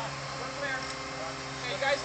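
Truck-mounted mobile crane's diesel engine running steadily, an even low drone under the crew's voices.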